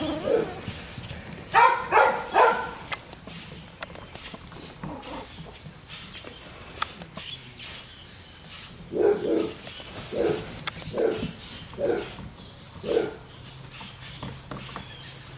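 Chinese Crested Powder Puff puppies barking: three quick, high barks about a second and a half in, then a run of about five shorter, lower barks roughly once a second near the end.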